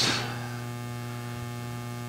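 Steady electrical mains hum in the audio feed. The end of a spoken word trails off right at the start.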